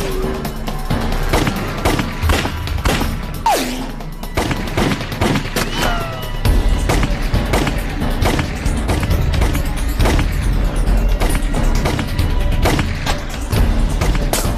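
A film gunfight: repeated, irregular pistol and rifle shots, with bullets striking tree trunks. Dramatic background music runs under it, and its heavy bass comes in about halfway through.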